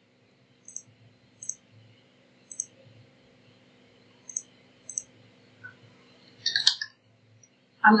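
Computer mouse button clicking about six times at uneven intervals, over a faint steady hum.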